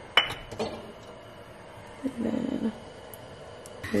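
Kitchenware clinking: one sharp, ringing clink just after the start and a softer knock shortly after it. A brief murmured vocal sound comes about two seconds in.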